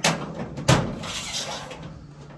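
Under-deck ceiling panel being unlocked by hand from its carrier: a sharp click at the start, then a louder snap a little under a second in, followed by a brief rattle of the panel.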